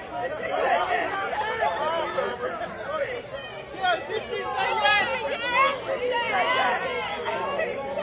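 Excited crowd chatter: many people talking and exclaiming at once in overlapping voices, with louder, higher-pitched voices about five to seven seconds in.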